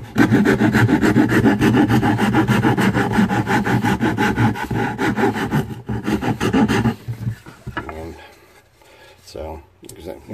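Coarse hand file rasping across the curved edge of a wooden guitar body in quick, short strokes, stopping about seven seconds in.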